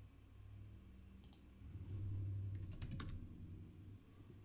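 Faint computer keyboard keystrokes and mouse clicks, a few sharp clicks spread out. A low hum swells under them in the middle.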